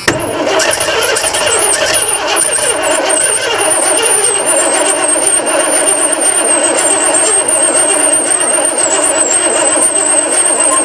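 Starter cranking the 1991 Ford E-150 van's engine continuously without it catching, with a thin wavering high whine over the cranking. The engine won't fire because no fuel is reaching it; the crew suspect both tanks are simply empty.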